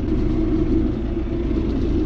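John Deere tractor's diesel engine running steadily under light load at a slow field pace, heard from inside the cab as a constant low rumble.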